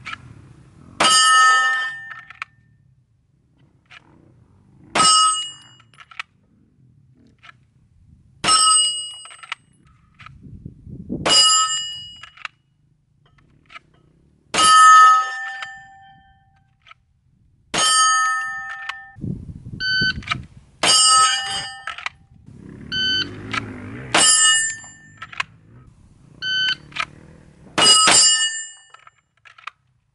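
Pistol shots fired slowly at a rack of AR500 steel plates. About nine hits come three to four seconds apart, each shot followed by the clear ring of a struck plate. Different plates ring at different pitches, and some shorter, fainter rings come in between toward the end.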